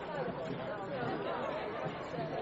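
Several people talking at once: a steady babble of overlapping, indistinct conversation among a small crowd.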